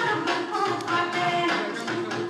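Assamese folk dance music: a held melodic line over sharp, evenly repeating percussion strokes.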